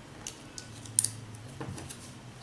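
A battery being pushed into a plastic battery holder: a few small clicks and rattles, with one sharp click about a second in as the cell seats against the contacts.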